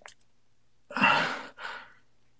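A person sighing: one long breath out about halfway through, followed by a shorter, quieter one.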